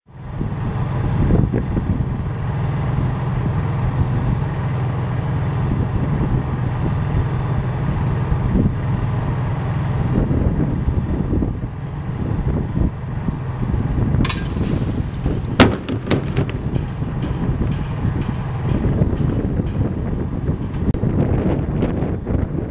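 Wind rumbling on the microphone over a steady low hum, broken about two-thirds of the way through by one sharp, loud bang: the 1/3-scale ENUN 32P spent-fuel cask model striking the impact pad in its drop test.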